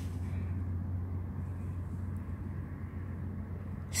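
A low, steady rumble with nothing else distinct in it.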